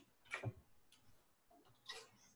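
A quiet room with a few short taps, the clearest about half a second in and another near the end.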